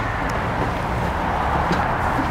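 John Deere Z320R zero-turn mower's 726cc V-twin engine running steadily as the mower drives across the lawn.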